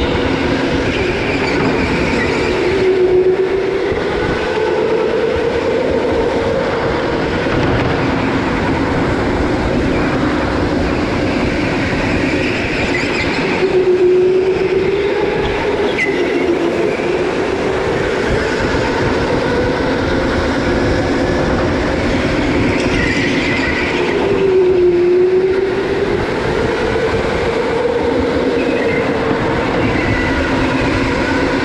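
Racing go-kart running at speed, a steady motor tone over rolling noise, its pitch dipping and climbing back three times about eleven seconds apart as it slows and accelerates.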